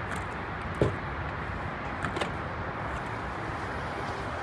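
The power liftgate of a 2017 Toyota Sequoia unlatching with a sharp clunk about a second in, then rising open with a lighter click about a second later, over steady background noise.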